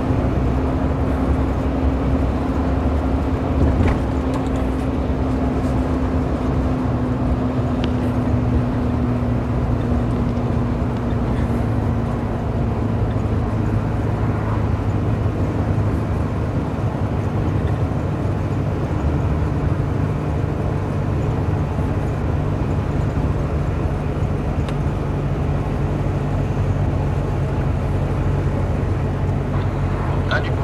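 Truck's diesel engine running steadily at cruising speed with road noise, heard from inside the cab. One tone in the engine note slowly drops in pitch over the first dozen seconds, then the note holds steady.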